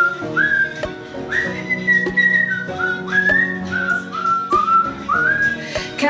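A tune whistled as a string of short held notes, each sliding up into its pitch, over steady background music.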